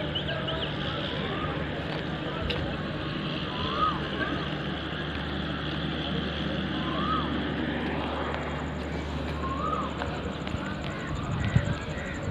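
Indian Railways electric locomotive approaching along the platform, a steady low hum and rumble, with short rising-and-falling chirps recurring every few seconds over it and a brief louder burst near the end as it draws alongside.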